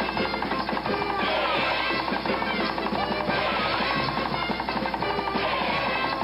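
Lively Russian folk dance music played by a live ensemble, dense and continuous, with a fast run of rapid repeated notes.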